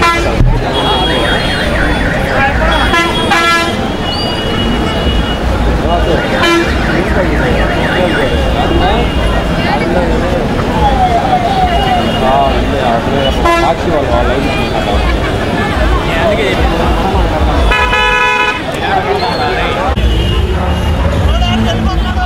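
A large outdoor crowd of marchers, many voices shouting and chattering at once. A vehicle horn sounds several short times and once longer near the end.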